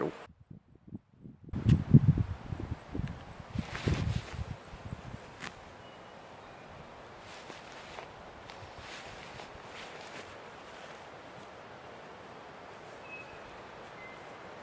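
A few heavy thumps and rustles in the first few seconds, as of the mic being handled or earth being moved, then quiet outdoor air with a couple of faint short bird chirps.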